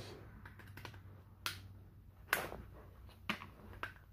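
Sharp clicks and snaps of pliers working a plastic stove control switch with brass terminals: four clear clicks spread over a few seconds, the loudest about halfway through, with fainter ticks before them.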